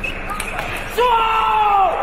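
A few sharp clicks of a table tennis ball on bat and table, then about halfway through a loud, long shout that slides down in pitch: a cheer as the point is won.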